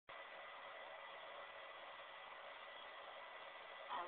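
Faint steady hiss with a thin high whine running through it: the background noise of a low-quality recording, with no distinct sound event.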